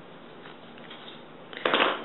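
Faint rustling of hands working the stretchy fabric pocket of a running skirt, with a sudden louder burst of rustling near the end.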